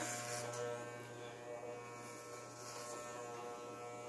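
Electric hair clippers running steadily with an even buzz as they are moved over a man's short hair.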